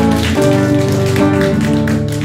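Guitar playing ringing chords in a live song, with a chord change shortly after the start.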